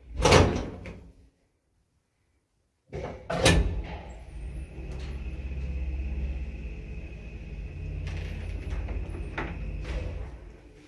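1977 ZREMB passenger lift: a heavy clunk at the start and another about three seconds in, then the hoist machinery runs with a steady low hum and a thin high whine as the car travels between floors. A second and a half of dead silence separates the first clunk from the second.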